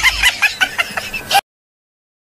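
A quick series of short clucking calls like a hen's, about six or seven a second, cutting off suddenly about one and a half seconds in.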